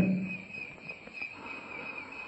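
Faint, steady high-pitched chirring of insects in the background during a pause in speech, as a man's voice trails off at the start.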